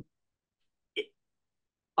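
Near silence, broken once about a second in by one brief, short vocal sound from a man, a small catch in the throat during a pause in his speech.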